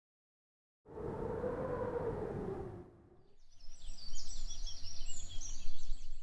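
Birds chirping, many quick high calls over a low steady rumble, starting about halfway through. Before them, about two seconds of even noise with a faint tone that rises and falls.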